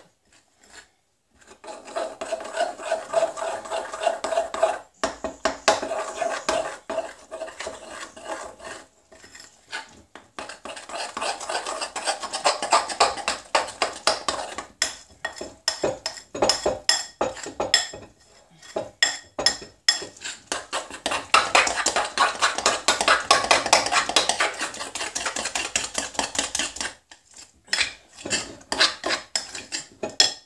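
A utensil beating thick cake batter in a glass mixing bowl: rapid strokes scraping and clinking against the glass, in several runs with short pauses between them.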